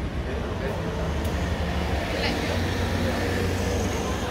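Road traffic running steadily on the city road alongside, a constant engine and tyre rumble from passing cars and buses.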